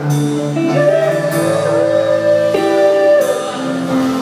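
Live pop-ballad cover by a small band: a woman singing long, wavering held notes into a microphone over sustained guitar and band chords.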